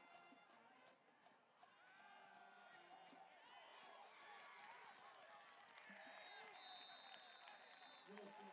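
Faint, distant crowd of spectators at a football game, cheering and shouting, rising from about two seconds in as a runner breaks into the open. A long, steady whistle sounds near the end.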